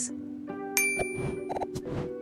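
A bright, bell-like ding sound effect strikes about a second in and rings briefly over soft background music, followed by a few quick clicks.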